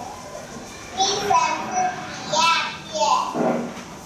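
Young children's voices, chattering during a classroom language game, played back from a video. There is a quieter stretch for about the first second, then several short high-pitched phrases.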